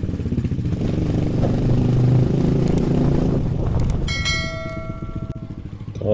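Motor scooter engine running as it rides along, getting louder about two seconds in and easing off afterwards. About four seconds in a single bell-like ring sounds and fades away.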